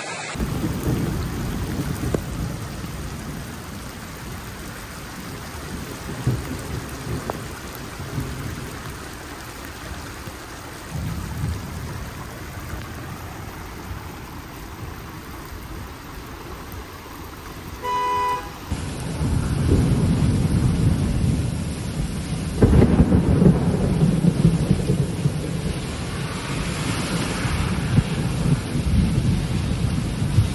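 Heavy rainstorm recorded on phones: a steady wash of rain and running water with low rumbling wind on the microphone, louder and gustier after a cut about two-thirds of the way through. A short horn-like beep sounds once, just before that.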